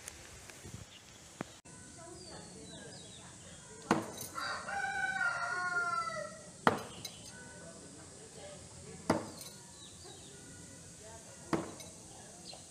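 Four no-spin throwing knives strike a wooden log-end target one after another, each a sharp thud, about two and a half seconds apart. Just after the first hit, a rooster crows once for about two seconds.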